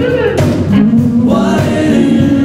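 Live band music with several voices singing held notes over electric guitar, bass and drums.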